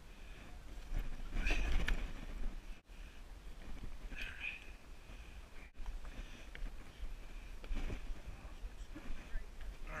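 Low rumble of wind and handling noise on a body-worn camera's microphone, with scuffs of a hiker scrambling up bare granite. A short spoken word comes about a second in, and another voice sound about four seconds in.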